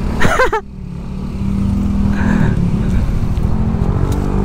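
Yamaha NMAX scooter's single-cylinder engine running at low speed, its steady hum growing gradually louder as it pulls the scooter slowly along.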